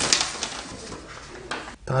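A sheet of paper rustling as it is handed over and unfolded, loudest at the very start, with a soft low murmur of a voice.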